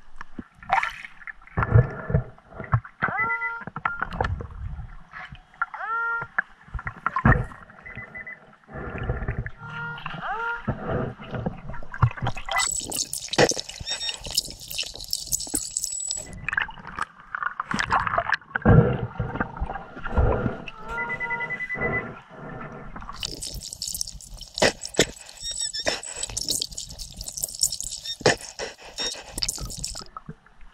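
Underwater recording of a metal detecting search: muffled knocks and water sloshing as a hand fans sand off the river bottom, with several short rising beeps from a Minelab Excalibur II underwater metal detector signalling a target, and two longer stretches of hissing water noise.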